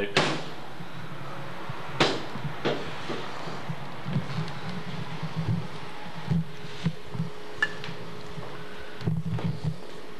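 A door knocks at the start and bangs shut about two seconds in, followed by scattered low thuds and a few light clicks.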